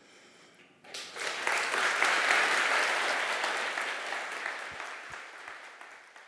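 A large audience applauding: the clapping breaks out about a second in, swells quickly, then slowly dies away.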